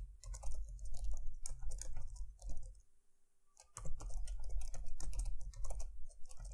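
Typing on a computer keyboard: quick runs of keystrokes, broken by a pause of about a second near the middle, over a faint steady hum.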